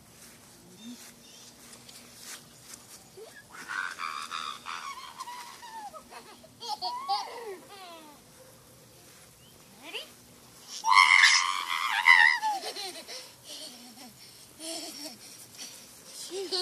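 A toddler's high-pitched squeals and babble. The loudest squeal comes about eleven seconds in and lasts about a second and a half.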